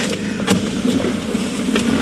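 Car running, heard inside the cabin as a steady low hum, with two light clicks.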